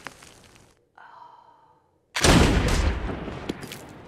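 A single loud pistol shot from a film soundtrack about two seconds in, sudden and ringing out slowly as it dies away. Before it, the fading echo of an earlier shot and a woman's short gasp.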